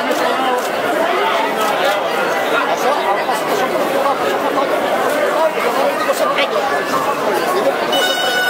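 A large crowd of castellers and onlookers chattering, many voices overlapping at once in a steady hubbub.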